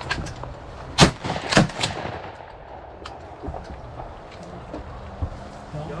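Shotgun blasts at flying ducks: a loud shot about a second in, a second a little over half a second later, and a fainter third right after it.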